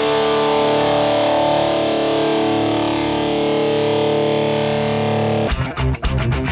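A distorted electric guitar in drop D tuning, a PRS SE SC 245, lets a single chord ring out and slowly die away. About five and a half seconds in, louder, fast rhythmic music cuts in abruptly.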